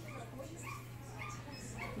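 A dog whimpering and yipping quietly in short, high, repeated calls that rise and fall in pitch.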